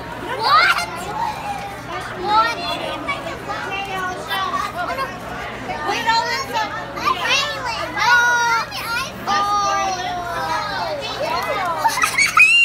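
Several children's high-pitched voices calling out and talking excitedly over one another, with a background of room chatter.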